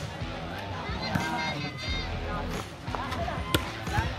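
A volleyball struck by hand: one sharp smack near the end, with a fainter hit about a second in, over the chatter of players and onlookers.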